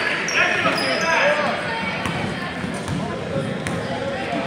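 Basketball game sounds in a gymnasium: the ball bouncing on the court and short high sneaker squeaks in the first second or so, under the chatter of spectators' voices.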